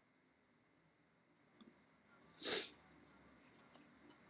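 Near silence, broken about two and a half seconds in by one short, sharp breath noise, a sniff or quick exhale close to the microphone. Faint quick clicks follow near the end as the mouse switches the chart's timeframe.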